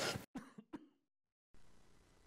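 A man gives two short, quiet coughs into his fist.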